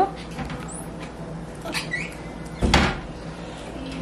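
A hard plastic dumpling mould being handled on a wooden tabletop: a few light clicks, then one louder knock a little under three seconds in.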